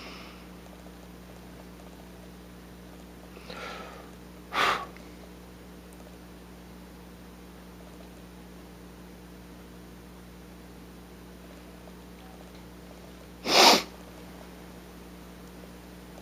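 A man's breath sounds over a steady low hum: a sigh about four and a half seconds in, and near the end a single short, sharp nasal exhale, the loudest sound here.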